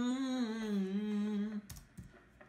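A man humming one held note that wavers and sags slightly in pitch, stopping about a second and a half in, followed by a faint click.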